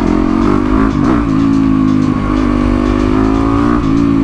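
Yamaha WR450F single-cylinder four-stroke engine pulling steadily while the bike is ridden along a road, with a brief dip in revs about a second in and revs falling off near the end.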